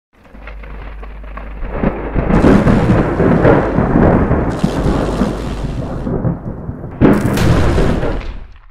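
Thunderstorm sound effect: thunder rumbling over a steady hiss of rain, swelling over the first few seconds. A sudden loud crack of thunder comes about seven seconds in.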